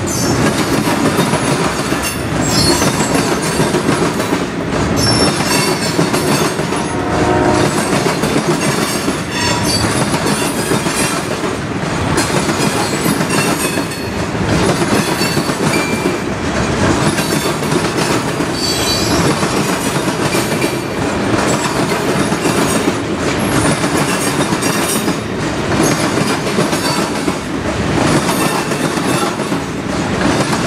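Freight train of hopper cars rolling past steadily, its wheels clicking over the rail joints, with short high wheel squeals now and then.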